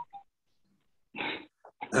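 A short breath-like noise over a video-call microphone about a second in, between moments of silence, followed near the end by the start of a man's voice.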